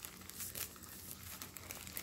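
Faint rustling and crinkling of a small object being handled and turned over, with a low steady hum underneath.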